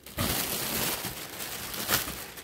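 Plastic air-pillow packing crinkling and rustling as a hand pushes it around inside a cardboard shipping box.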